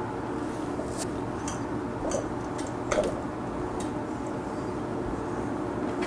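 A handful of light clicks and taps of small metal eyelets and grommets being handled on a granite slab, over a steady background hum.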